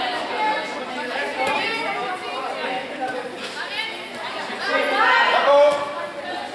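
Chatter of several voices echoing in a sports hall, with one voice rising louder near the end.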